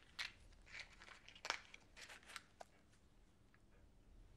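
Faint rustling and crackling of a small cardboard cigarette packet being handled in the hands: a string of short crackles and clicks, the sharpest about halfway through, dying away near the end.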